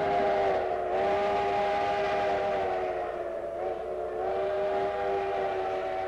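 Steam locomotive whistle of the Durango & Silverton narrow-gauge train blowing one long chord of several notes, sagging slightly in pitch about halfway through.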